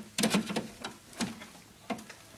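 Hand snips cutting through the small copper tubes of a copper-and-aluminium radiator coil. There is a quick cluster of sharp snaps near the start, then single snaps about a second in and near the end.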